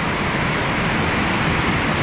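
Very heavy rain falling on a steel-roofed shop building, a loud, steady rushing noise.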